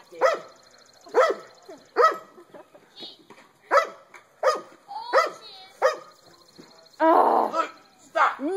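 A dog barking repeatedly at a skunk it has cornered: short, sharp single barks about once a second, then a longer, rougher burst of noise near the end.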